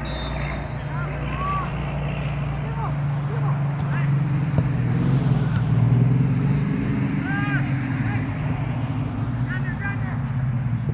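A steady low motor hum, swelling to its loudest about six seconds in and then easing off, with short distant shouts from the field above it.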